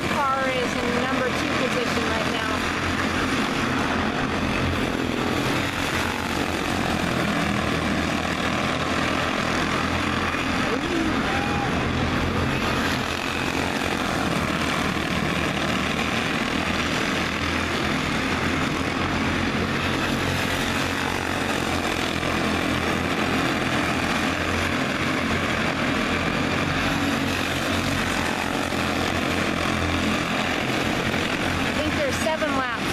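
A pack of Honda-engined quarter midget race cars running at speed on an oval track, their small single-cylinder four-stroke engines blending into one steady drone.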